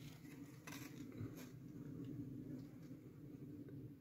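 Faint handling noise: a few soft rustles and light taps as a hand moves around a fig on its branch close to the microphone, over a low steady hum.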